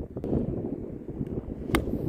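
Gusting wind buffets the microphone with a steady low rumble. Near the end a golf club strikes the ball in a single sharp crack during a tee shot.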